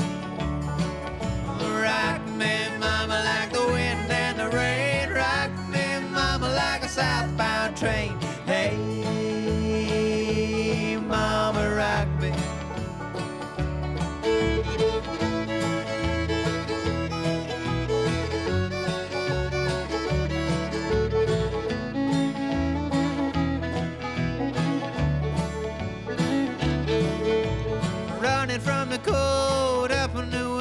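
Bluegrass string-band music with fiddle, banjo, guitar and upright bass playing at a steady beat, the fiddle carrying the lead through the instrumental passage.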